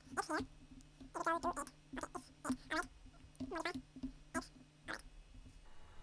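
Computer keyboard typing in short runs, with several brief high-pitched chirping squeaks scattered among the keystrokes.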